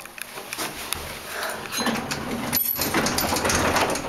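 Elevator car doors sliding open at a landing, a rising rush of noise with scattered clicks and knocks starting about a second in.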